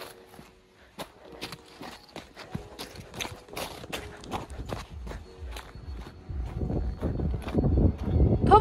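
Footsteps crunching on loose gravel and broken rock, about two steps a second, growing heavier with low thumps near the end.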